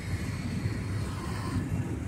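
Low, uneven rumble of outdoor background noise.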